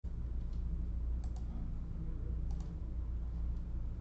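A steady low hum with a few sharp, light clicks over it: one about half a second in, then quick pairs of clicks at about 1.3 and 2.5 seconds.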